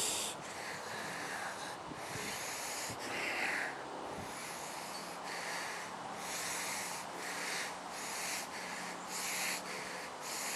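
A man breathing hard in quick, rhythmic huffs, acting out the panting of an exhausted runner.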